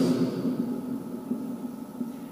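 A man's voice trails off at the start, then a steady low hum continues under the pause.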